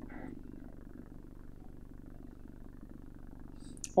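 Room tone: a steady low hum.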